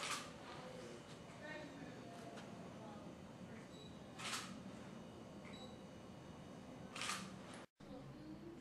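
Faint, indistinct voices of people talking in a small room, with three brief rustling noises from handling of a handheld camera. The sound drops out completely for a moment just before the end, at an edit.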